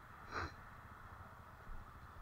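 A short breath from the man, about half a second in, over a faint low background.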